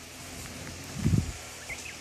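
Quiet rural outdoor background with a soft low thump about a second in. Two faint, short high chirps follow near the end.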